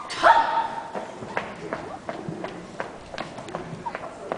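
A short high-pitched vocal exclamation at the start, then footsteps on a stage floor: a string of sharp, irregular clicks.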